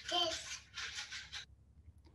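A small child's voice briefly at the start, then several soft, scratchy rustles of dry wheat heads being slid and handled on a wooden tabletop.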